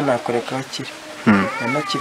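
A man talking into a handheld microphone, in two short stretches, with a brief high falling tone over his voice near the end.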